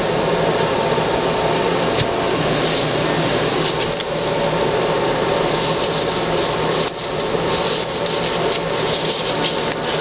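Steady whirring of a small electric blower motor pushing air, with a faint low hum under an even rush; it dips briefly about seven seconds in.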